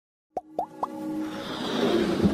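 Three quick pops about a quarter second apart, then a swelling whoosh with music that grows louder: sound effects of a motion-graphics logo intro.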